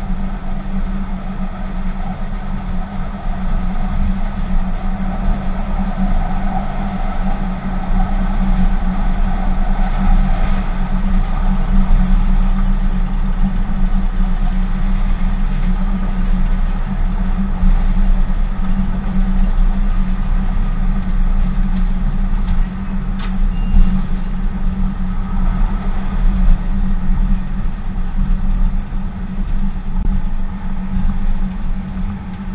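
Tyne & Wear Metro train running along the line, heard from the driver's cab: a steady hum with a low rumble of the wheels on the rails. A single sharp click comes about two-thirds of the way through.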